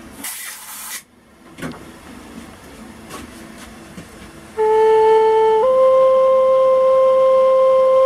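A brief hiss about a second long, then a Native American flute is played: a short lower note steps up to a long, steady C held for over three seconds. This is a tuning check on the C note after its hole was enlarged with a burning tool, and the C comes out close to in tune, a little sharp.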